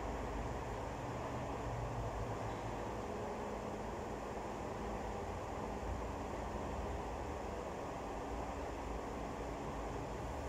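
Steady, low rushing background noise with no distinct events.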